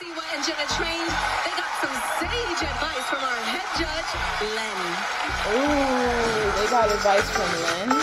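Television broadcast sound: music with a steady beat under voices, with people clapping and cheering.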